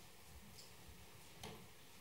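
Near silence: low room tone with one faint click about one and a half seconds in.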